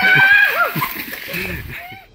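Voices with no clear words, fading out near the end.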